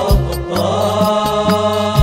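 Moroccan devotional folk ensemble music: a sustained, wavering melodic line over low drum beats, with one beat just after the start and another at the end.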